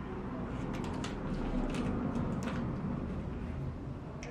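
A person chewing a mouthful of Kit Kat, with a few faint, crisp crunches from the wafer, over a steady low background rumble.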